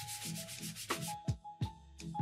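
Sandpaper rubbed by hand in quick back-and-forth strokes over a 3D-printed PLA plastic part, scuffing the surface to key it. About a second in the sanding stops and background music with chime-like notes begins.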